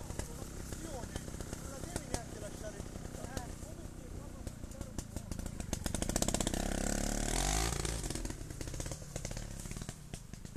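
Trials motorcycle engine running as the bike climbs a steep slope, revving up about six seconds in and holding higher for a couple of seconds before dropping back.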